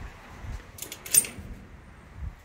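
Brief metallic jingling and clinking, a short cluster of clinks about a second in, the sharpest just after.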